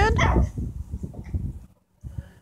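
A small dog whining, its held, high note ending with a slight rise about a quarter second in, followed by irregular soft scuffs and taps that die away near the end.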